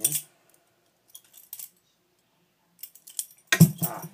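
Balisong (butterfly knife) being flipped through a blade grab trick: its metal handles and blade clink and clack together in a few short bursts of clicks. The loudest burst, with a deeper tone under it, comes near the end.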